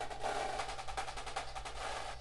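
Sampled marching snare drum line (Virtual Drumline library) playing back rapid paradiddle and sixteenth-note rudiments in close, even strokes. Partway through, the mod wheel switches the samples from center-of-head to edge-of-head strokes.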